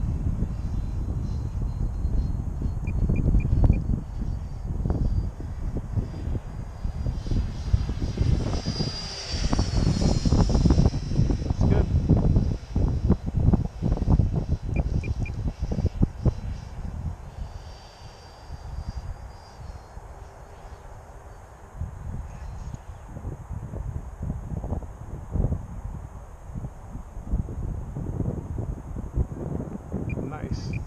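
Electric ducted-fan RC jet (HSD Viper V2 on a 12S battery) flying overhead: a thin, high whine that rises and falls in pitch as the jet passes, loudest about ten seconds in and again briefly later. Gusty wind rumbles on the microphone throughout.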